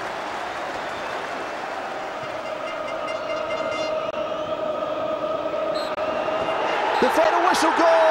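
Large football crowd singing and cheering in celebration, a held chant over a steady roar that swells towards the end.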